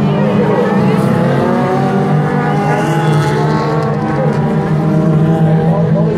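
A pack of autocross cars racing on a dirt track, several engines running at once, their pitches rising and falling over one another.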